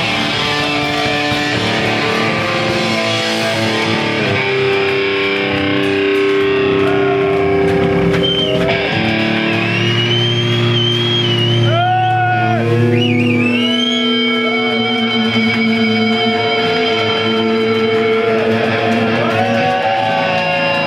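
Distorted electric guitars played live through amplifiers, letting long notes ring, with a high wavering tone that bends up and down in the middle, typical of guitar feedback.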